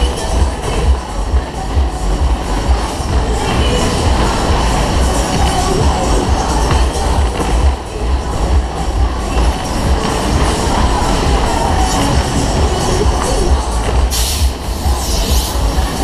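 Loud fairground music from the Berg-und-Tal ride's speakers over the rumble of its cars running round the undulating track, with a heavy pulsing rumble of wind on the onboard microphone. About fourteen seconds in comes a brief loud hiss.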